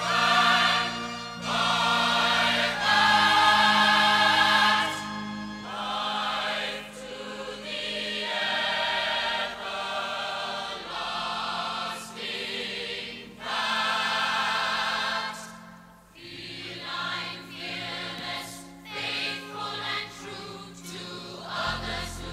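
A chorus of voices singing a show tune over instrumental backing, in long sung phrases with brief breaks between them.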